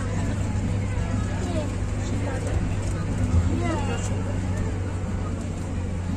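Steady low rumble of a moving open-sided tourist train, with passengers' voices over it and one brief bump a little past halfway.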